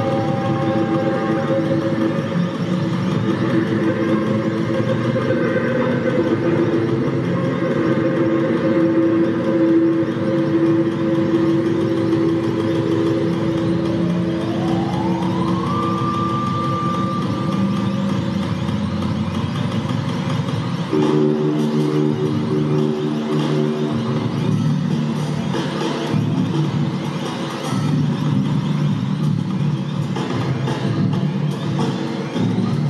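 Electric guitar through effects pedals playing a loud, dense, noisy drone of held tones. About halfway through, one tone glides slowly upward and holds, and about two-thirds of the way in the sound shifts to a new cluster of sustained notes.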